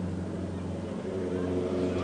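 A vehicle engine running steadily, a low even hum, with a higher steady tone joining about halfway through.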